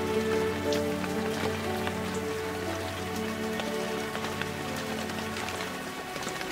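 Rain falling, with many separate drops heard as scattered sharp ticks, layered under slow ambient meditation music of long, held tones.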